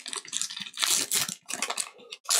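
A foil Pokémon booster pack wrapper crinkling and tearing open by hand, in a run of irregular crackles that is densest about a second in.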